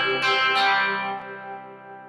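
Electric guitar with picked chord notes ringing on and fading away; one note changes about a second in. This is the tail of a strum-then-arpeggiate chord pattern.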